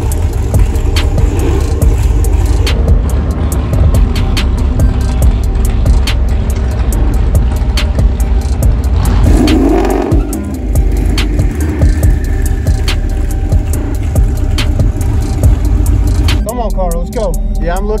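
Twin-turbocharged 5.0 Coyote V8 of a 2019 Ford Mustang GT running with a steady low rumble, with a short surge of engine and tyre noise about halfway through. Music plays over it.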